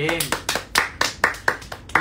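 Two people clapping their hands in a quick run of claps, about five a second.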